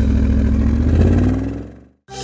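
A motor-vehicle engine sound, running steadily low with a slight rise in pitch, then fading out shortly before the end.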